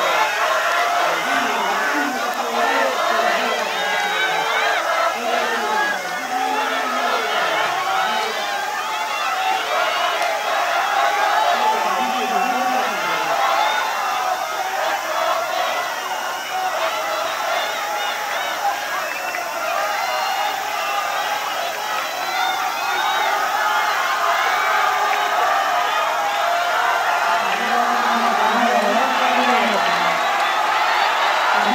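Spectators shouting and cheering runners on during the closing stage of an 800 m race, many voices overlapping without a pause, growing a little louder near the end.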